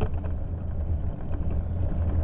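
Bicycle riding over packed snow, heard through a handlebar-mounted camera: a steady low rumble from wind and ride vibration, with scattered crunching clicks from the tyres and bike.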